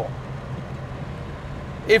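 Steady low drone inside the cabin of a moving 1971 Chevrolet Chevelle SS: its big-block V8 running at cruise, with road noise. A man's voice starts again near the end.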